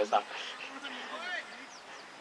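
A flying insect buzzing close to the microphone, a faint hum that wavers in pitch, with a short bit of speech at the start.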